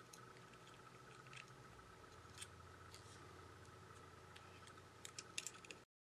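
Faint clicks and taps of fingers pressing flex-cable connectors onto a phone's motherboard: a few soft clicks, then a quick cluster of sharper clicks about five seconds in, over a faint steady hum. The sound cuts off abruptly just before the end.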